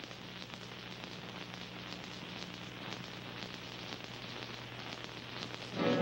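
Surface noise of an old film's optical soundtrack: a steady hiss with fine crackle and a faint low hum. Music begins right at the end.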